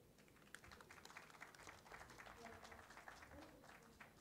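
Faint, light applause from a small audience: many quick, scattered claps.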